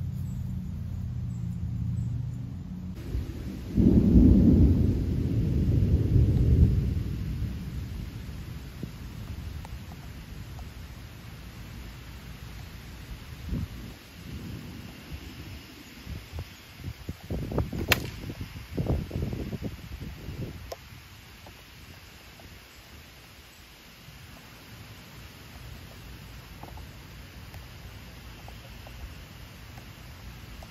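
Thunder rumbling a few seconds in, the loudest sound, over light rain. About two-thirds of the way through comes a sharp crack: a 680-grain broadhead arrow shot from a 43-pound recurve punching through three-quarter-inch plywood.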